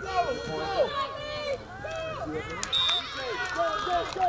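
Many voices of sideline spectators and players shouting and yelling over one another during a youth football play. A brief high whistle sounds about three seconds in.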